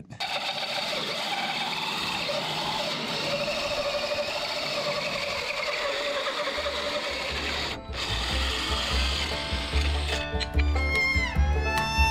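Cordless drill driving a large hole saw through plywood, a steady cutting whine with a short break near eight seconds. Bluegrass-style music comes in over it, a bass beat from a little past six seconds and fiddle-like tones over the last two seconds.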